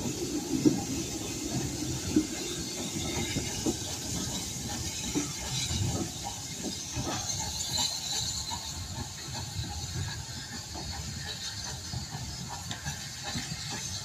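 Steam locomotive Austin No. 1 hauling a short goods train away, with steam hissing and the wagons' wheels knocking and clanking on the rails, slowly getting quieter as it draws off.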